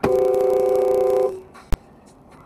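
Car horn: one steady two-tone blast, about a second and a quarter long, starting and stopping sharply. A single sharp click follows.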